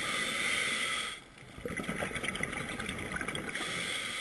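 Scuba diver breathing through a regulator, heard muffled through the camera's underwater housing: a hiss of breath, a short pause about a second in, then a crackling rush of exhaled bubbles, and the hiss again near the end.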